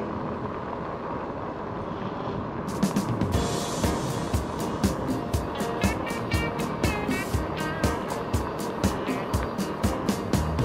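Steady rolling noise of a slow ride along a paved road. About three seconds in, background music with a steady beat and a melody comes in and carries on over it.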